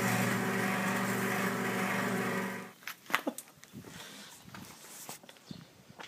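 Microwave oven running with a steady electrical hum while heating a lithium-ion battery pack. The hum cuts off abruptly about two and a half seconds in, and a few faint clicks and knocks follow.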